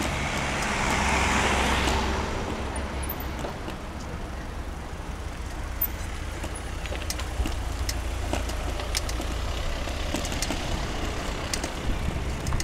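Street traffic: a car passes close by in the first two seconds, then a steady low rumble of slow-moving and queued cars, with a few light clicks.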